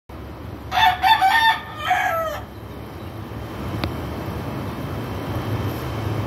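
A rooster crowing once: a cock-a-doodle-doo of about a second and a half that ends on a falling note.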